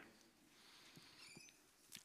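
Near silence: room tone, with a few faint ticks about a second in.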